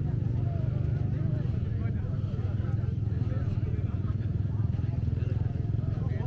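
People talking, with a steady low rumble underneath.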